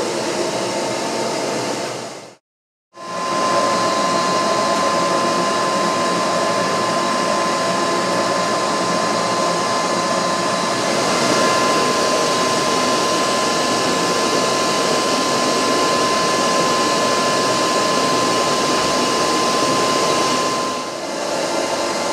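Bee vacuum's motor running steadily, a constant rushing airflow with a high, even whine, drawing bees into its collection box. The sound cuts out for about half a second near the start, then resumes at the same level.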